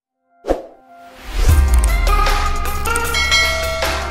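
Channel intro sting: a short pop sound effect about half a second in, then intro music with a heavy bass and held tones that comes in loudly about a second in.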